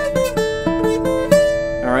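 Acoustic guitar picking single notes of a pentatonic scale stretching exercise, about five notes in a steady run with each note ringing into the next.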